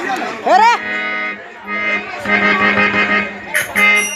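Harmonium playing sustained devotional chords, with a voice swooping up in pitch about half a second in and a brief bright metallic sound near the end.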